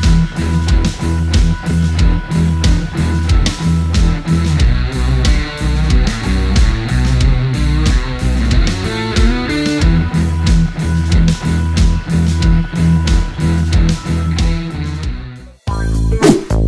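Background rock music with guitar and a steady, heavy beat, cutting off just before the end.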